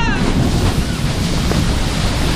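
Rushing, splashing water around a water-ride boat, as a steady loud wash of noise, with wind buffeting the microphone.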